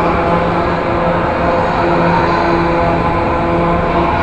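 A carousel running: a steady mechanical rumble and hum, with a few held tones that come and go.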